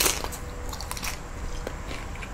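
A tortilla chip bitten with one sharp crunch at the start, then chewed with a few softer crackles.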